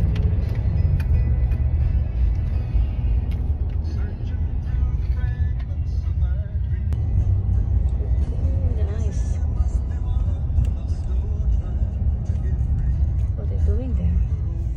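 Car driving, heard from inside the cabin: a steady low road and engine rumble, with music and faint voices over it.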